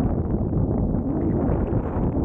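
Wind rushing over the microphone in flight under a paraglider: a steady roar of airflow.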